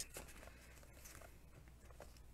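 Near silence: room tone with a steady low hum and a few faint small clicks.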